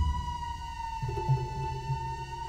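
Ambient soundtrack music of sustained tones: a high held note sliding slowly downward over a faint low bed, joined about a second in by a low pulsing tone and a mid note.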